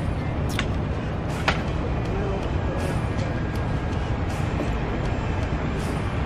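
Steady street ambience with a low traffic rumble, broken by a few sharp clicks of a metal spoon against the stainless-steel sink.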